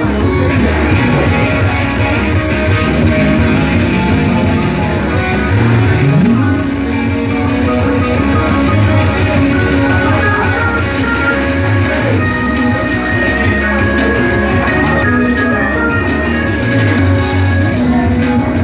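Rock music with guitar, playing steadily throughout; a low note slides upward about six seconds in.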